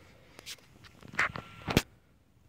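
A few light knocks and clicks of handling, ending in a sharp click near the end that is the loudest of them.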